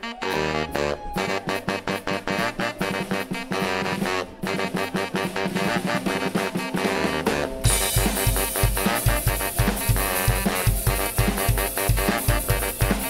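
A live band playing an upbeat instrumental led by two saxophones over drums. About two-thirds of the way through, the full drum kit and bass come in harder, with bass-drum hits and cymbals.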